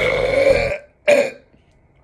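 A man's drawn-out burp, followed by a shorter second one about a second in.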